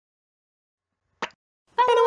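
Channel logo intro sting: a single short pop a little over a second in, then a brief, steady, voice-like pitched tone as the logo comes up.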